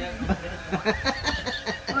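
A few people chuckling and snickering with some talk mixed in.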